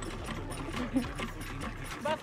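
Cast-iron hand pump being worked by hand, its handle and plunger clanking in a steady rhythm while water pours from the spout.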